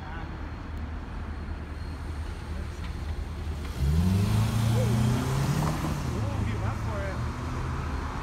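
A car passes close by about four seconds in, its engine note rising as it accelerates along with a rush of tyre noise, then easing off. A steady low rumble runs underneath.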